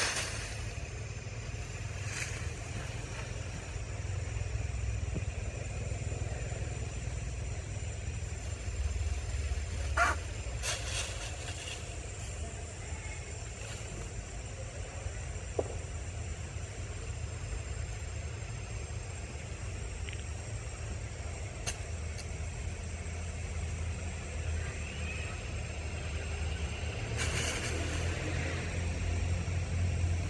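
Steady low outdoor rumble, with a sharp click about ten seconds in and a fainter one a few seconds later.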